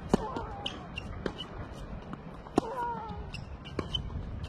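Tennis rally: four racket-on-ball strikes about 1.2 to 1.4 seconds apart. The strikes at the start and about two and a half seconds in carry a short falling vocal grunt from the hitting player.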